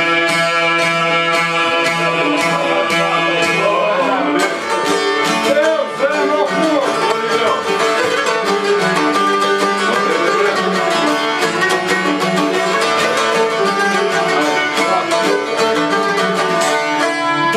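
Albanian folk instrumental: long-necked lutes, including a çifteli, plucked rapidly in a busy running pattern under a bowed violin melody. The plucking grows denser about four seconds in.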